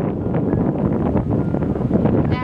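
Wind buffeting the microphone: a steady low rush of noise.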